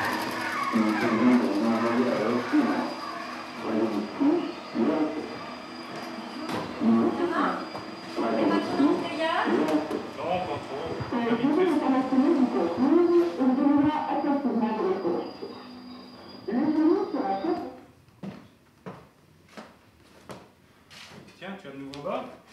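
An upright vacuum cleaner running with a steady hum under voices, then switched off about eighteen seconds in.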